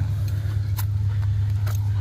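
Steady low hum of an idling car, with a couple of faint clicks.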